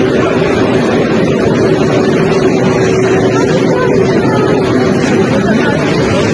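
Loud, steady din of a densely packed, jostling crowd, with a faint steady hum underneath.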